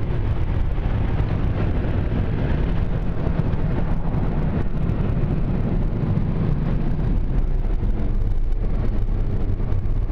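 Ryko SoftGloss XS car wash's blower dryer running steadily over the truck, drying it, heard from inside the cab: a continuous rush of air with a deep low rumble.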